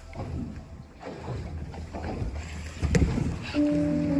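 Water sloshing and splashing against a small boat, with one sharp knock about three seconds in. Background music with steady held notes comes in near the end.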